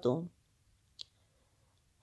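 A single short, faint click about halfway through, in near silence after a spoken word trails off.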